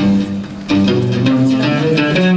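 Live band playing, with plucked string instruments over low bass notes. The music drops briefly under a second in, then picks up again at full level.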